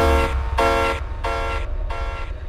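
Jump-up drum and bass: a horn-like synth chord stabbed several times in short, evenly spaced hits over a held deep bass note, with no clear drums.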